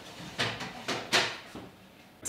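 Three sharp knocks and clicks within the first second and a half as a built-in oven is opened and ceramic soufflé ramekins are lifted out.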